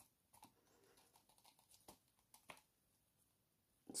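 Near silence, with a few faint light ticks and scrapes of a plastic stir stick working in a plastic resin mixing cup.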